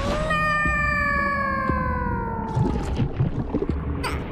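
A cartoon character's long, held "ohhh" cry: one note that slowly sinks in pitch over about two and a half seconds. Light clatter and a few soft knocks sit beneath it near the end.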